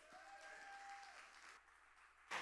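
Faint applause from a church congregation welcoming the introduced speaker.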